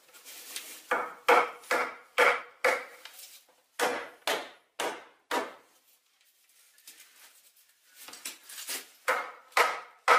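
Repeated knocks of a round wooden off-cut, used as a handleless mallet, striking green-wood poles to drive the rails into the drilled holes of a rustic stool frame until the ends come through the other side. The blows come about two to three a second, each with a short wooden ring, and stop for about three seconds in the middle before starting again.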